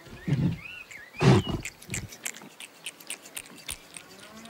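Cartoon bull's vocal cries: a short one, then the loudest a little over a second in and a smaller one after it, followed by a run of small clicks.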